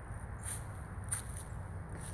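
Faint footsteps in dry leaf litter and pine needles: a couple of soft crunches about half a second and a second in, over a low steady outdoor hiss.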